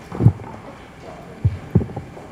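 Three dull, low thumps on the dais picked up by the table microphones, one shortly after the start and two close together near the end, over a steady room hum.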